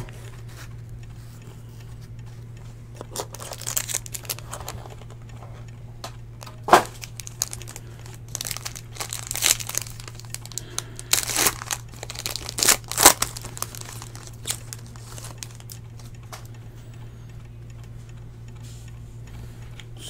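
Foil wrapper of a Panini Court Kings basketball card pack crinkling and tearing open in irregular bursts, with a couple of sharp crackles as the foil rips.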